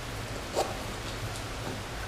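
Hands tightening the straps of an Ortlieb Accessory Pack on a handlebar bag: a short click of a strap or buckle about half a second in, then fainter handling sounds, over a steady background hiss.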